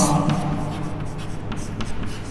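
Chalk writing on a blackboard: a few short, light scratches and taps as a word is finished.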